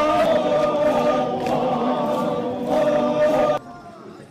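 A group of Naga men chanting in unison during a traditional dance, several voices holding long notes together. The chant breaks off suddenly near the end.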